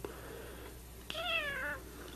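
A cat meowing once: a single short call, falling in pitch, a little over a second in, over quiet room tone.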